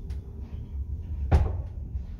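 Sliding car doors of a 1985 ZREMB passenger lift closing and shutting with one loud metallic bang about a second and a half in. A steady low hum runs underneath.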